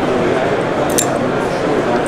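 Background crowd chatter, with one sharp metallic click about halfway through as a small folding knife's blade is opened and snaps into place.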